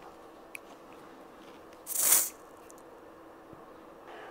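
Small aerosol spray can giving one short spray hiss about halfway through, the nozzle having just been cleared with a needle. A faint click comes shortly before.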